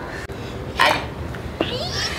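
A girl's short exclaimed "ay" about a second in, then a high-pitched squeal rising in pitch near the end.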